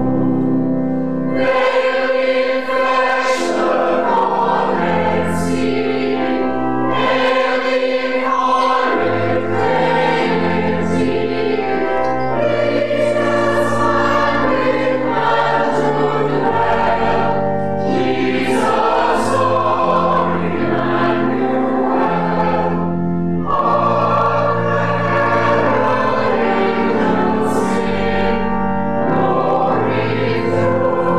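A choir singing a Christmas carol in a reverberant church, with accompaniment carrying low sustained bass notes.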